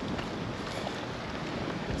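Steady wind buffeting the microphone: an even rush with a low rumble underneath.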